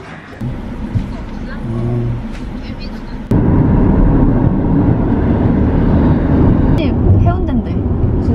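Car road noise heard from inside the cabin while driving at highway speed: a steady low rumble of tyres and engine. It starts abruptly about three seconds in, after a quieter stretch of room noise.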